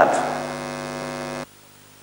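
Steady electrical hum with many evenly spaced overtones, cutting off abruptly about one and a half seconds in and leaving only a faint hiss.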